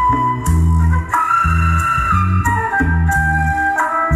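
Recorded pop love song playing through hi-fi loudspeakers from a tube preamp fitted with an RCA 12AU7 black long-plate tube. This is an instrumental break with no singing: a held keyboard melody, organ-like, moves through a few long notes over a steady bass and drum beat of about two beats a second.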